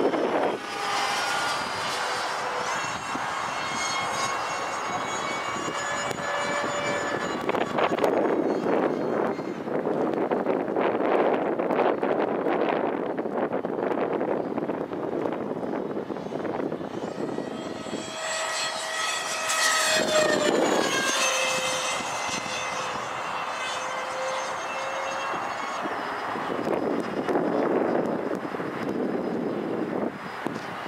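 Twin electric ducted fans of a radio-controlled A-10 model jet whining in flight, the pitch stepping up and down with the throttle. About two-thirds of the way through, the whine bends down in pitch as the jet passes by.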